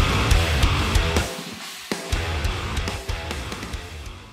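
Heavy progressive metal (djent) with distorted electric guitars. The low end cuts out briefly at about a third of the way through and then comes back, and the music gets quieter toward the end.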